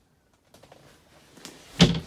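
Hinged berth lid with its cushion lowered shut over a marine toilet compartment: faint handling noise, then a single thump as it closes near the end.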